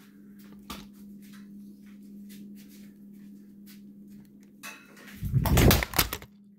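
Phone camera being carried and handled, with light clicks and knocks over a steady low hum, then about five seconds in a loud rumbling knock and scrape as the phone falls.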